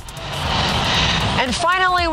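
A rushing, whoosh-like noise for about the first second and a half, then a woman starts speaking.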